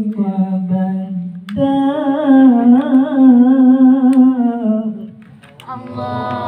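A man's solo devotional chant through a handheld microphone: long, wavering melodic phrases, broken briefly about a second and a half in, with a pause near the end.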